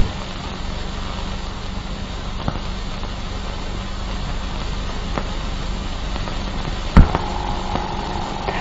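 Steady hiss and low hum of a worn 1940s optical film soundtrack, with a few faint pops and one loud crackle about seven seconds in.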